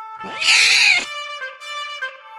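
A cat's single loud meow, lasting well under a second, over background music of held notes.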